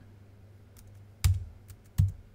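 Computer keyboard keystrokes: a few separate clicks, the loudest about a second and a quarter in and another at the very end, over a faint low hum.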